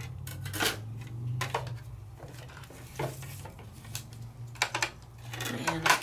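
Clear acrylic cutting plates and the plastic platform of a die-cutting machine being handled and set down: scattered light clicks and clacks, a few seconds apart, over a low steady hum.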